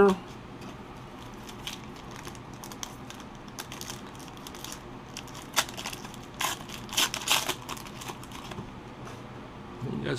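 Foil wrapper of a hockey card pack being torn open and crinkled by hand: a run of irregular crackles, loudest about six to seven and a half seconds in.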